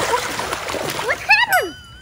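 Pool water splashing and churning as a person thrashes on an inflatable air mattress, followed about a second later by a brief rising-and-falling cry.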